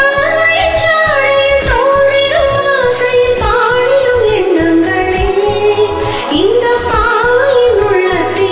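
A woman singing a Tamil film-song melody with a wavering, sliding voice over a karaoke backing track with a regular beat.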